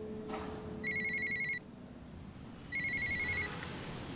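Mobile phone ringing with an electronic trilling ringtone: two rings of under a second each, about two seconds apart.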